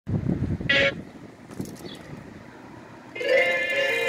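A low rumble, then a brief whistle-like toot under a second in; music begins about three seconds in.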